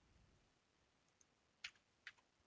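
Near silence with one short, faint click near the end, from a computer mouse button as strips are selected and dragged.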